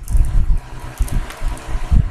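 Irregular low rumbles and short thumps close to the microphone, with no speech.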